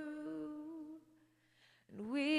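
A woman's voice holds a long sung note into a microphone. The note fades out about halfway through, and after a short silence a new note begins at the very end.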